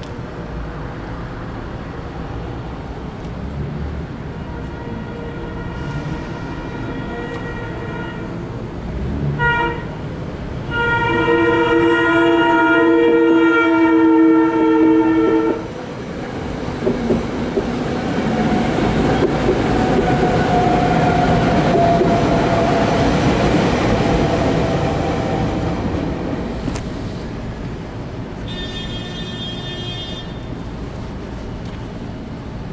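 SEPTA electric commuter train sounding its horn: a short blast about nine seconds in, then a long blast of about five seconds. It then passes over the crossing with about ten seconds of wheel rumble and clatter. The crossing's electronic warning bell rings underneath.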